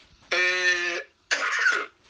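A person's voice: a held, steady-pitched vocal sound lasting under a second, then a short rough breathy burst like a cough.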